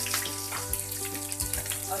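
Quartered onions and garlic cloves sizzling in hot oil in a frying pan, a steady hiss, over background music.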